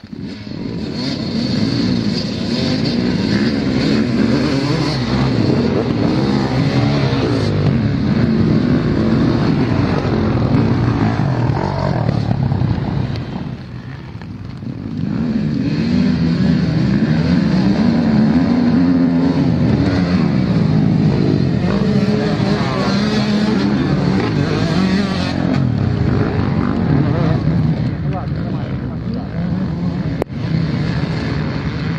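Many dirt-bike engines running together at a race start, revving hard on the line and then pulling away under full throttle. The sound dips briefly about halfway before rising again.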